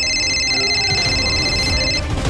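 A phone ringing: a high, rapidly pulsing electronic ring that cuts in suddenly and lasts about two seconds.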